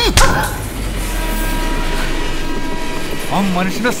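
Passenger train passing close by: a loud rush and rumble that comes in abruptly and holds steady, with a steady high tone running over it.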